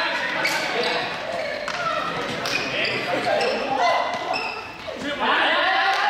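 Young people's voices shouting and calling out over one another during a running ball game, in an echoing sports hall, with several sharp thuds of a ball bouncing on the floor.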